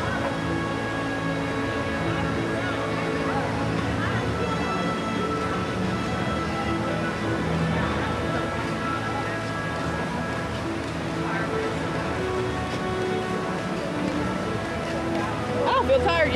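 Background music with long held notes, over a steady wash of water from a plaza fountain and distant crowd chatter. Near the end, the voices of passers-by come close.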